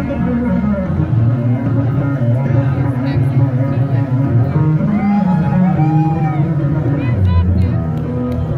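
Electric bass guitar played solo, live and amplified: a continuous run of dense, fast low notes.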